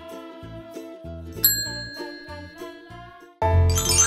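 Short upbeat intro jingle with a bass line and light melody. A bright bell-like ding rings out about a second and a half in. Near the end the music turns much louder and fuller.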